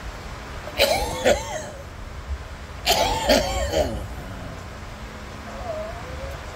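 A man coughing hard in two harsh fits, about a second in and about three seconds in, each lasting under a second.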